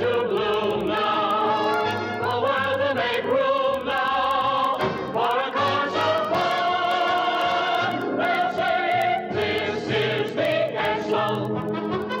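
Music: a choir singing with orchestral backing, a sustained chorus passage with no words picked out.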